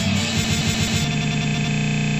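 Band music with guitars; about a second in it turns into a harsh, buzzing stutter, a short fragment repeating as if the audio had frozen in a crash.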